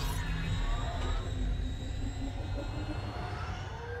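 Film soundtrack: a sci-fi aircraft engine rumbling with slowly gliding whines, mixed with the film's score.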